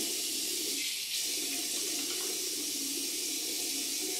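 Bathroom sink tap running steadily into the basin, a constant hiss of water with no break.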